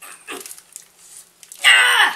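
A man's voice making short whining cries that fall in pitch as he eats saltine crackers: a brief one just after the start and a loud, longer one near the end.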